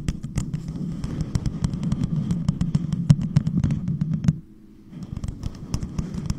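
Long pointed fingernails tapping rapidly on a tall cup fitted over a microphone: fast, irregular clicks over a low, muffled resonance from the cup. The tapping stops briefly about four and a half seconds in, then starts again.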